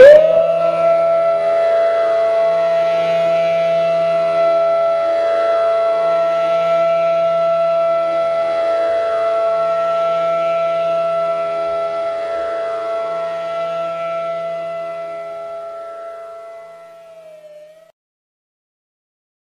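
Flute music ending: the flute holds one long note over a soft drone, and both fade out to silence over the last few seconds.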